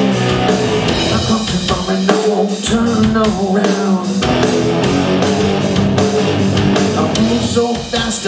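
Live rock band playing an instrumental passage: electric guitars, bass guitar and a drum kit, loud and steady with a regular beat. A lead vocal comes in right at the end.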